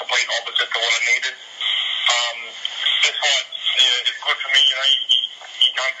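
Speech only: a man talking continuously over a phone line, thin-sounding with no bass.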